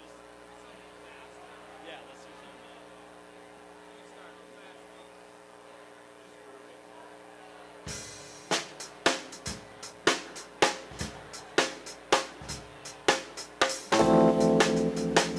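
Steady amplifier hum over a quiet room, then about eight seconds in a drum kit starts a beat, with drum and cymbal strikes about two a second.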